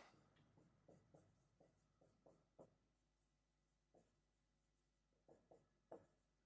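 Very faint strokes of a marker writing on a whiteboard: a handful of short squeaks and taps scattered through near silence.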